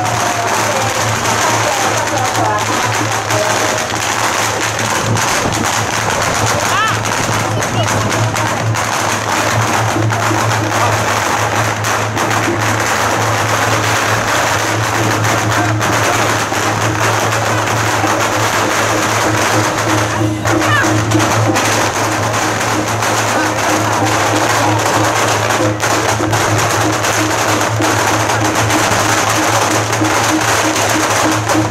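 Temple procession percussion playing steadily: drums and gongs beating with a constant wash of cymbals, over the chatter of people crowded around.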